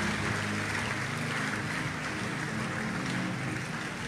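A large congregation applauding, a steady wash of clapping, with soft sustained music playing underneath.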